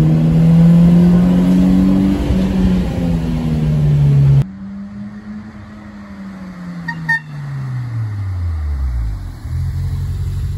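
Fiat X1/9's mid-mounted four-cylinder engine pulling steadily under load, heard from inside the cabin. After an abrupt cut, the same car is heard from outside, much quieter, its engine note falling steadily in pitch as it drives by.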